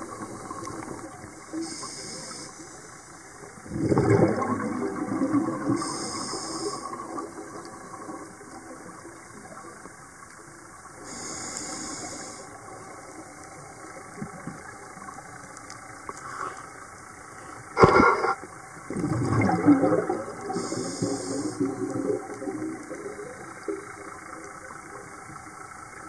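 Underwater scuba breathing heard through the camera housing: exhaled bubbles leave the regulator in two loud rushes, about four seconds in and again at about nineteen seconds, with a weaker one in between. A single sharp knock comes just before the second rush.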